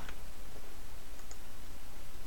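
A faint computer mouse click or two over a steady low background hum.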